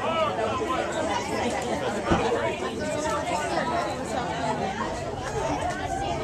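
Spectators' chatter: several voices talking over one another, with one short thump about two seconds in.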